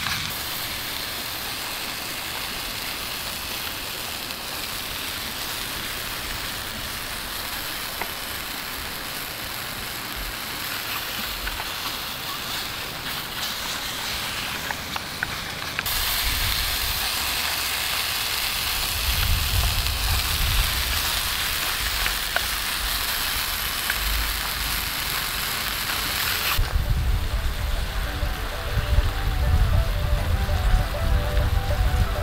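Pork pieces sizzling as they fry in a mess tin over a wood gas stove, with a deep low rumble joining in during the second half. Soft music comes in near the end.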